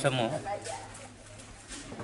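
A man's voice trails off in the first half second, then a quieter pause with faint pigeon cooing in the background.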